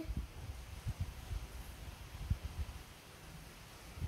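Soft, irregular low bumps and handling noise of hands and small plastic toy pieces against the table, the strongest a little past the middle.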